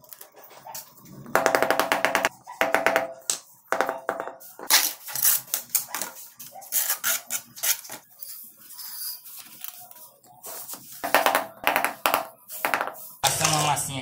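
A steel trowel scraping and clicking against ceramic skirting tiles and wet cement mortar as the mortar joint along the top of the tiles is smoothed, in quick runs of rapid clicks about a second in and again near the end.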